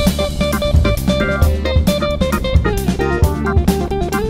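Band music: guitar over bass and a drum kit, with steady beats and many pitched notes.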